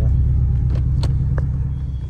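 Porsche Boxster heard from inside the cabin while driving: a steady low engine and road rumble that eases off slightly toward the end, with a few light clicks.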